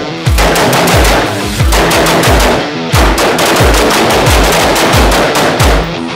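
Rapid rifle fire, quick shots in two strings with a short lull about two seconds in, mixed over heavy metal background music with a steady kick drum.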